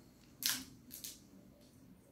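Two short, crisp snaps about half a second apart, the first louder: a communion host being broken.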